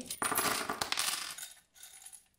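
A handful of small metal charms, with a few pink squares, tossed onto a board and table, clinking and skittering as they land and scatter, then dying away after about a second and a half.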